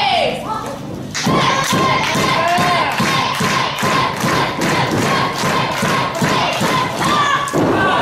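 Wrestling crowd clapping in unison, about three claps a second, over crowd voices. The clapping starts after a short lull about a second in and stops near the end.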